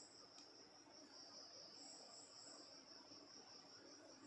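Near silence with a faint, steady, high-pitched insect trill, typical of crickets, and a higher chirping phrase about two seconds in.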